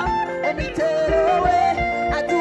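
Gospel choir of men's and women's voices singing with a live band: electric guitar, keyboards and a drum kit keeping a steady beat.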